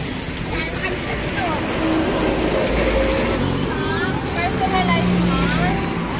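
People's voices talking and exclaiming over the low, steady rumble of a vehicle and street noise, which swells briefly around the middle.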